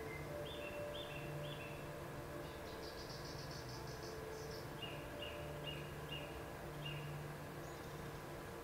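Faint bird chirping over a steady low room hum: a few short two-note chirps, a quick high trill in the middle, then a run of five more chirps.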